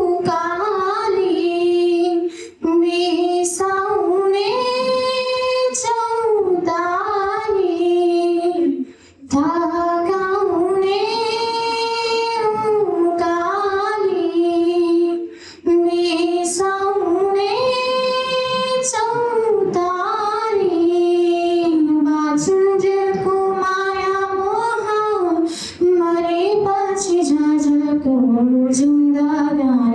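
A young woman singing unaccompanied into a microphone, in long held melodic phrases with brief pauses for breath between them.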